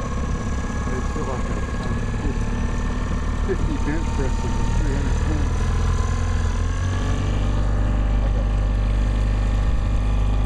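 Boat motor idling with a steady low rumble, its revs and level rising slightly about halfway through.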